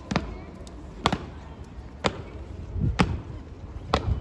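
Honour guards' boots stamping on stone paving in a slow ceremonial march: five sharp stamps about a second apart.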